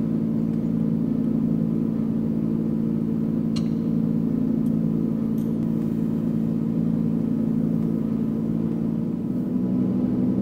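Simulated aircraft engine sound from the flight simulator, a steady drone of several low tones; about nine seconds in its pitch steps up a little.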